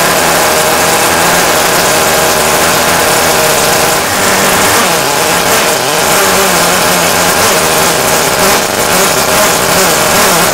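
Small see-through Wankel rotary engine running steadily at high speed, a loud even buzz that wavers only slightly in pitch.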